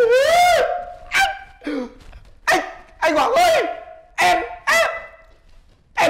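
A man wailing in exaggerated, mock crying: a run of about six high, wavering cries with short breaks between them.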